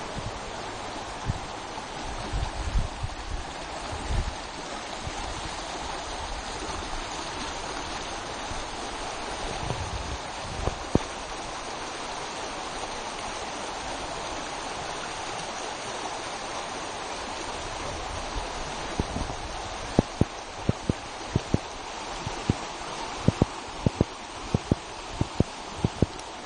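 River water flowing steadily over shallow rapids. Short low thumps on the microphone break in a few times near the start and come thick and fast in the last six seconds.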